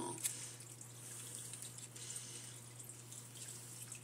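Quiet room tone: a faint steady low hum and hiss, with one small click shortly after the start.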